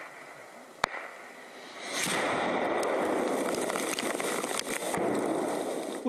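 Gunfire at a front-line trench: a sharp shot right at the start and another about a second in, then a loud, continuous rushing noise from about two seconds on.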